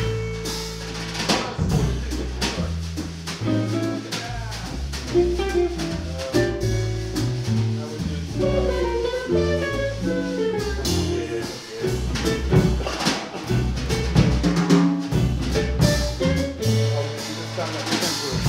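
Jazz trio playing live: a hollow-body archtop electric guitar playing single-note lines over bass and a drum kit with cymbals.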